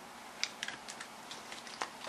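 Tarot cards being shuffled by hand: a few faint, scattered card clicks and rustles.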